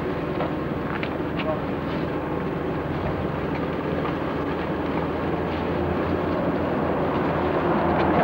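Indistinct voices over a steady outdoor rumble, with a few light knocks in the first couple of seconds.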